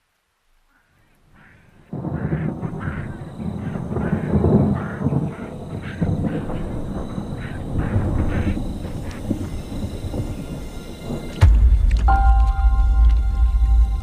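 Film trailer soundtrack: silence at first, then from about two seconds in a busy, noisy cinematic ambience with many short crackles. Near the end a loud deep rumble sets in, joined a moment later by steady sustained music tones.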